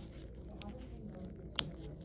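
A single sharp plastic click about one and a half seconds in, as a StatLock securement device's retainer lid snaps shut over the PICC catheter, against faint handling noise from gloved fingers.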